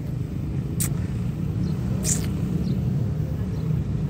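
Steady low outdoor rumble, with two brief hissing sounds about one second and two seconds in.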